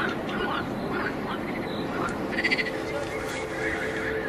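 Frogs calling in a chorus over a steady background, with short pulsed croaks and a louder pulsed call about two and a half seconds in.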